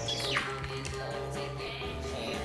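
Electronic TV drama score with sustained tones, opening with a quick falling sweep.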